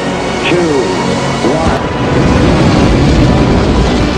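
Launch-control countdown voice calling 'ignition sequence start… three' over music, followed from about two seconds in by a deep, building rocket-engine ignition rumble.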